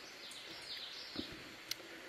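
Faint outdoor background with a few distant birds chirping, and a small click near the end.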